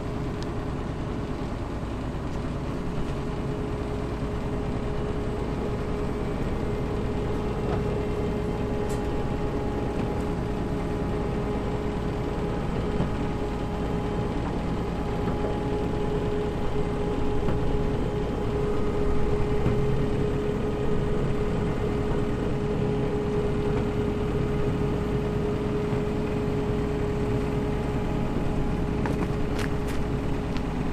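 Claas combine harvester's diesel engine running steadily at low revs, with a steady whine over the engine note, as the machine creeps up onto a low-loader trailer. It swells a little about two-thirds of the way through, and a few faint clicks come near the end.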